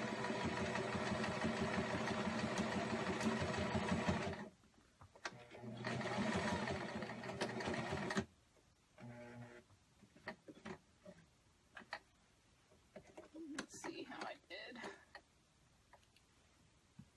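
Electric domestic sewing machine stitching through layers of fleece at a slow, even pace. It runs for about four seconds, stops briefly, then runs again for about three seconds. After that come a short burst and scattered clicks and handling noises.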